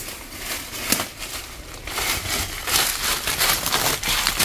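Footsteps crunching and rustling through dry leaves and brush, a run of irregular crackles with a sharper crack about a second in.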